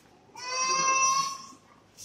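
A young child's voice: one long, high-pitched wail held on a steady note for about a second.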